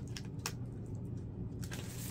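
Small paper envelope being folded and creased by hand: a few light crackles and clicks of paper over a low steady hum.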